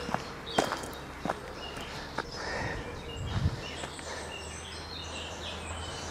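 Footsteps on a dirt woodland path, a few irregular steps, with faint bird chirps in the background.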